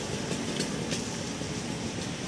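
Steady rumbling background noise, with a few faint clicks in the first second.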